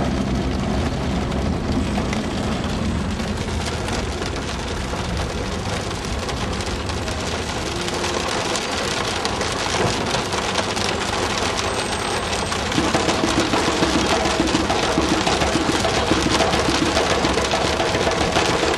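Heavy rain drumming on a car's roof and windows, heard from inside the cabin, over the low steady rumble of the vehicle driving along a flooded road. It grows a little louder about two-thirds of the way through.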